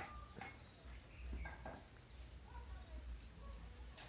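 Faint outdoor ambience: a few short, falling bird chirps, a low wind rumble on the microphone, and soft ticks of a knife peeling green cooking bananas.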